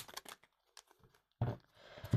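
Tarot cards being handled and dealt: a few quick faint clicks of cards flicked from the deck at the start, then a short swish about one and a half seconds in as cards are slid onto the table.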